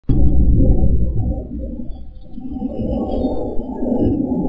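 Low rumble picked up by an outdoor security camera's microphone. It is loud from the start, eases off about one and a half seconds in, then builds again.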